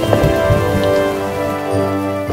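Steady rain falling, under slow, sustained chords of background music.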